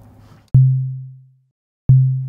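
Synthesized 808-style kick drum from Ableton Live's Operator, played twice: each hit is a short click followed by a low sine tone at a steady pitch that fades out over about a second. This is an early version of the kick, shaped only by a volume envelope with the sustain at zero, the oscillator an octave down and the release turned up slightly.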